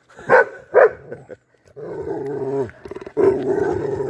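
Dogs play-fighting: two short barks under a second in, then long, low, rumbling play growls from about two seconds in to the end.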